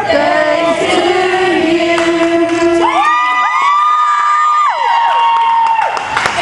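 A group of voices singing in long held notes. About halfway through, higher voices slide up and hold long high notes together.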